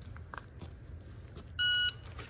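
Electronic shot timer's start beep: a single steady, high-pitched tone about a third of a second long, near the end, the signal for the shooter to draw and fire.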